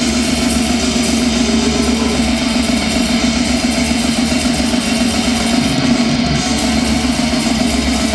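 Black metal band playing live, loud and unbroken: distorted electric guitars over a drum kit.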